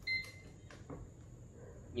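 Short electronic beep from a cheap green-beam five-line laser level as its button is pressed to switch the laser lines on, followed by a couple of light clicks.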